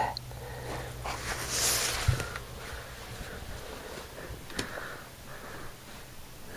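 Quiet close-up sounds of the person holding the camera: a short breathy sniff about one and a half seconds in, faint handling clicks, and a low hum that fades after about two seconds.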